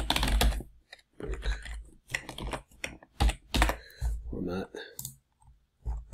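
Typing on a computer keyboard: irregular runs of keystrokes with short pauses, a few keys struck harder than the rest.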